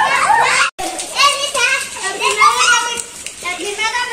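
Children's excited voices, shouting and calling out high over one another as they play. The sound drops out completely for a moment just under a second in.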